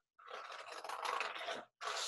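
Scissors cutting through a sheet of paper: one long cut lasting about a second and a half, a brief pause, then another cut starting near the end.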